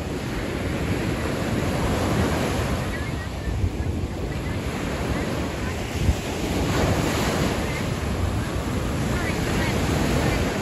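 Small waves breaking and washing up a sandy beach, the surf swelling and easing in a continuous rush, with wind rumbling on the microphone. A brief bump stands out about six seconds in.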